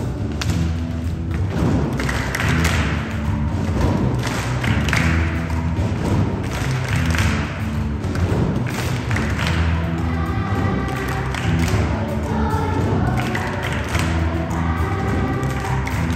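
Children's choir singing with instrumental accompaniment, over a heavy, steady bass with recurring thuds. The sung lines stand out more clearly in the second half.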